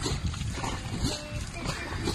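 Wooden paddles of a long-boat crew stroking through river water, with wind noise on the microphone.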